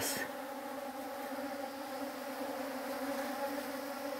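Bees buzzing among open pitaya (dragon fruit) flowers: a steady, strong hum of many bees at work.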